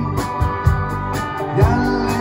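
Live rock band playing through a PA: drum kit hits, bass and electric guitar over sustained keyboard tones, with a note sliding up near the end.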